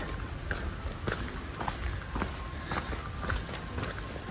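Footsteps at an even walking pace, about two a second, on stone paving, over a low steady rumble.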